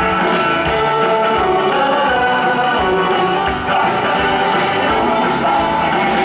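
Live rock and roll band playing with a steady drum beat, with a singer's voice over it.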